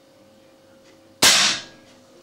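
A single shot from a Weihrauch HW air rifle fired without a silencer: one sharp crack about a second in that dies away within half a second.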